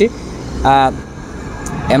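A man's voice: one short drawn-out vocal sound about a second in, then talking again near the end, over steady street noise with a low rumble.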